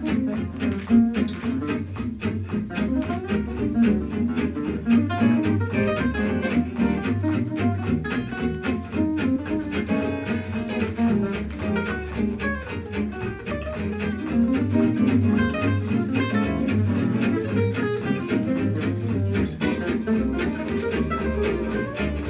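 Gypsy jazz on acoustic guitars, quick picked lead notes over strummed rhythm guitar, with a walking bass line underneath.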